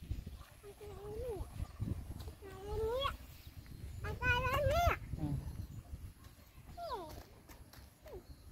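A dog whining: a series of drawn-out, rising whines, the loudest and longest about four and a half seconds in, and a short falling one near the end.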